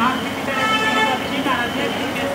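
Background chatter of several voices, with a short vehicle horn toot, one steady note lasting about half a second, starting about half a second in.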